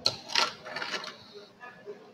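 Plastic Lego Technic pieces being handled and pulled apart: a sharp click, then a louder clatter about half a second in, followed by lighter rattling.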